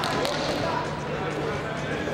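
Voices calling out in a large, echoing sports hall, with a short thud about a fifth of a second in from the wrestlers grappling on the mat.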